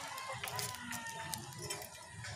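Chickens clucking, with scattered clicks and rustles close by.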